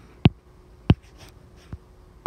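A stylus on a tablet screen: three sharp taps, roughly two-thirds of a second apart, with light pen-on-screen writing sounds in between.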